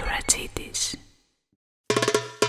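Logo-sting sound effects: hissing swishes and a sharp hit, fading out about a second in. After a short silence, the band's music with percussion starts right at the end.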